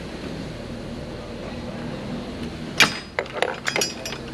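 Metal clicks and clinks of a socket wrench on the battery hold-down bolt. One sharp click comes near the end, then a quick irregular run of clicks as the bolt is tightened.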